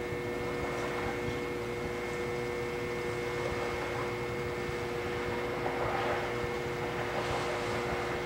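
Electric potter's wheel running with a steady hum while a large clay pot is thrown on it. Faint wet rubbing of hands on the clay comes in near the end.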